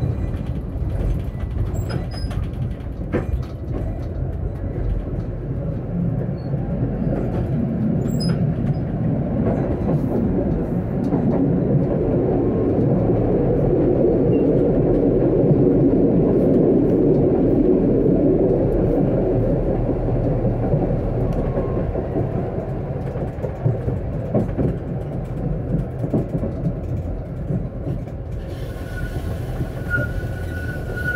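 A tram running along the rails: a continuous rumble of wheels on track that grows louder toward the middle and then eases off. A steady high tone joins near the end.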